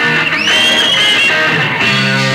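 Live rock band playing, electric guitar to the fore, with a high held note that bends upward about half a second in.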